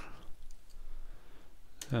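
Computer keyboard keys clicking faintly as a few characters are typed.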